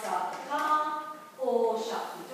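A woman's voice saying isolated phonics speech sounds one after another, each held at a steady pitch for about half a second to a second.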